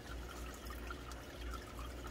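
Faint, steady trickle of water over a low hum: an AeroGarden Bounty's pump circulating nutrient water in its tank.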